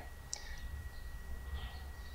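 A single short click about a third of a second in, over a steady low hum and a faint thin high-pitched whine.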